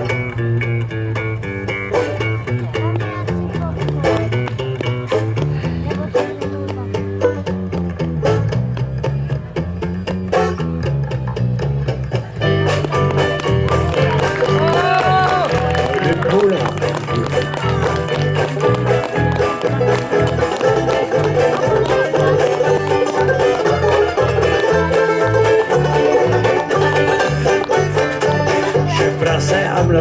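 Live banjo band playing an instrumental passage: banjo, guitars and bass guitar. The band plays fuller and louder from about halfway through.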